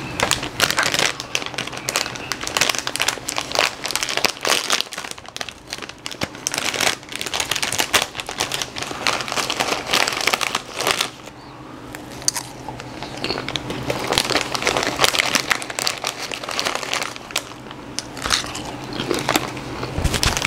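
Chips being chewed close to the microphone: dense, irregular crunching and crackling that eases off briefly about halfway through.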